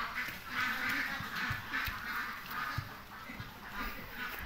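An animal calling over and over, short calls coming about every half second.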